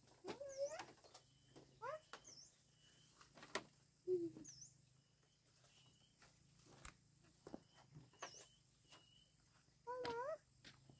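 Faint animal calls: a few short cries that bend up and down in pitch, the clearest near the start and around four seconds in, with small high chirps of birds recurring throughout and a couple of sharp clicks.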